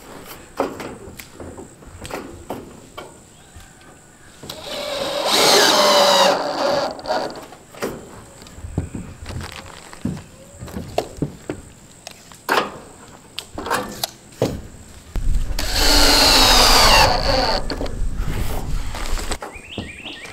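Cordless drill driver, not an impact, driving rubber-washered roofing screws through steel roof panels: two runs of a few seconds each, about five seconds in and again about fifteen seconds in, with the motor pitch shifting as each screw goes in. Scattered taps and clicks in between.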